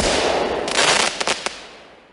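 Explosion sound effect: a sudden blast that crackles through its middle and fades away over about two seconds.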